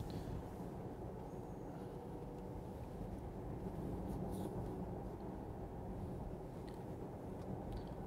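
Steady low road and tyre rumble heard inside the cabin of a moving Porsche Taycan 4S. It is an electric car, so there is no engine note, and a couple of faint ticks sit on top.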